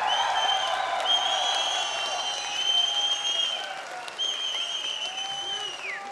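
Audience applauding and cheering after a drum ensemble's piece ends, with long, high whistles over the clapping; one whistle slides down in pitch near the end.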